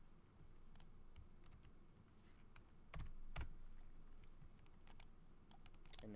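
Faint computer keyboard keystrokes and clicks, scattered and irregular, with two louder ones about three seconds in.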